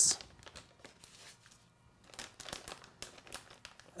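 Plastic vacuum-sealer bag crinkling and rustling as raw strip steaks are put into it. It is faint at first, with sharper crinkles in the second half.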